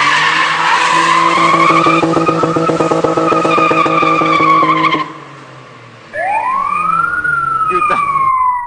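Car engine held at high, steady revs while the tyres squeal in a sliding turn; both cut off about five seconds in. After a short lull, a single high squeal rises in pitch and then slowly falls away.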